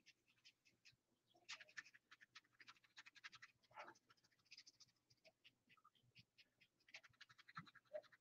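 Near silence, with faint scratchy rustling from a paintbrush being wiped on a paper towel to offload paint for dry brushing, and a few small ticks.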